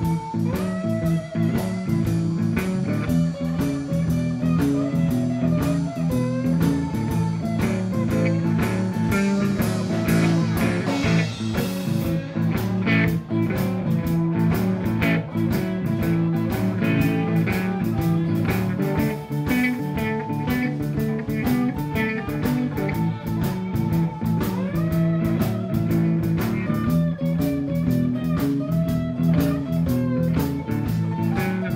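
Live blues band playing an instrumental passage: guitar lead with bent notes over bass guitar and a steady drum beat.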